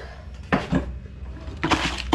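Wooden stick scraping and stirring a wet granular detergent mixture in a plastic bucket: two short scraping strokes about a second apart.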